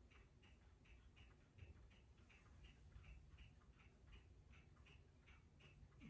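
Near silence: room tone with faint, even ticking, about three ticks a second.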